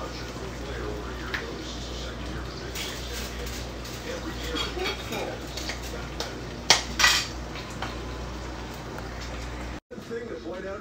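Plates and cutlery clinking and clattering as food is dished onto a plate, with two loud, sharp clinks a little past halfway, over a steady low hum.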